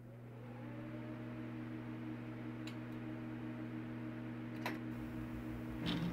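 A steady low mechanical hum of several held tones, slowly growing louder, with a faint click in the middle and another about two-thirds of the way through.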